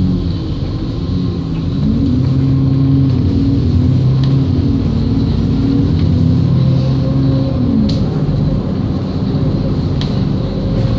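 Bus engine heard from inside the moving bus: a steady low drone whose note rises about two seconds in and drops again near the end, with a few faint light rattles.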